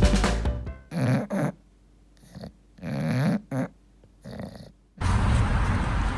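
The intro music fades out, then an English bulldog makes about five short throaty grunts and snorts with brief gaps between them. About a second before the end, a steady outdoor background hiss cuts in.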